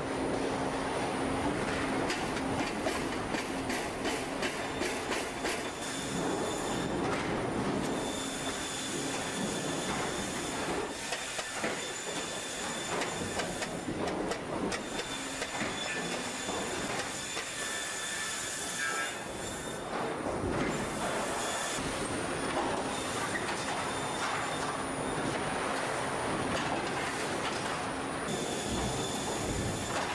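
Particleboard production-line machinery running, roller conveyors and forming equipment: a dense, continuous mechanical clatter and hiss with high, steady whining tones that come and go. The sound changes abruptly every several seconds.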